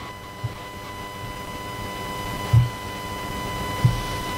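Steady electrical whine with evenly spaced overtones over a hiss, from the church's sound or recording system, with a few short low thumps, the loudest about two and a half seconds in and another near the end.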